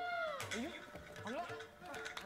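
A man's wailing cries: one drawn-out call that rises and falls in pitch, then two short upward-sliding cries.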